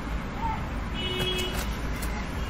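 Steady low background rumble with a brief, faint high-pitched tone about a second in.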